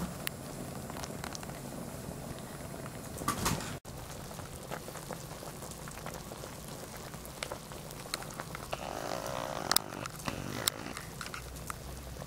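Broth boiling in a clay hot pot: steady bubbling with many small scattered pops, a little louder about nine to ten seconds in. The sound cuts out briefly just before four seconds in.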